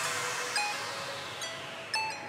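The closing bars of an electronic drumstep track. With the drums and bass gone, a wash of noise fades away under a few sparse, short high notes.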